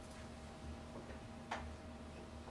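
Quiet room tone with a faint steady hum, broken by one sharp click about one and a half seconds in and a couple of fainter ticks before it.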